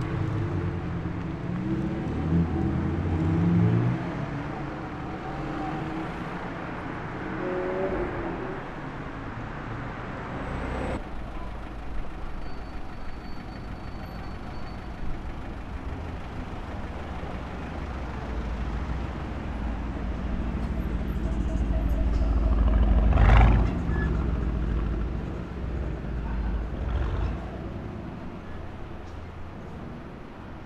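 Lamborghini Huracan Performante's V10 pulling away, its note rising over the first few seconds. After a cut, an Aston Martin Vantage's V8 rumbles in street traffic and builds to a loud rev about two-thirds of the way through, then fades as the car drives off.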